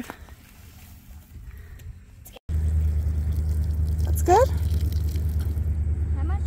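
Low, quiet background for about two seconds, then after an abrupt cut a loud, steady low rumble of wind on the microphone, with a child's short rising call about four seconds in.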